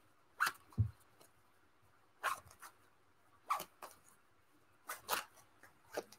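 A tarot deck being shuffled by hand: a string of short, separate card-slapping sounds, most in pairs, about every second or so, with a soft thump about a second in.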